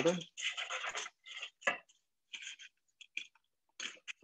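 Crisp fried pita chips scraped off a metal sheet pan into a bowl and shuffled by hand: a run of short, irregular dry scratches and clatters, broken by gaps of silence.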